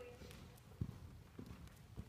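A horse's hooves striking soft dirt arena footing: a few faint, dull thuds, the clearest two about a second and a half second apart.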